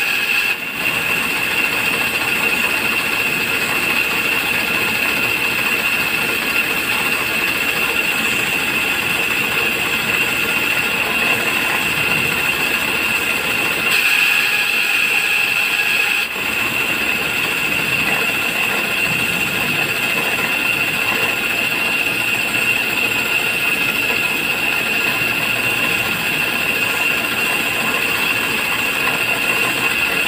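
Belt-driven bench grinder running steadily with a high-pitched whine while a glued-up fishing float blank is pressed against its grinding wheel and shaped down. The level dips briefly just after the start and again at about 16 s.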